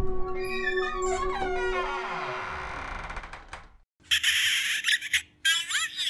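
A long, wavering creak of a door swinging slowly open, over a sustained eerie music drone. After a brief silence come several short, loud hissing bursts.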